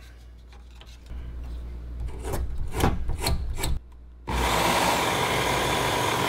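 Clicks and knocks of a sanding belt and belt-guide attachment being fitted onto a Work Sharp Ken Onion Elite knife sharpener, then about four seconds in its electric motor switches on suddenly and the fine abrasive belt runs steadily.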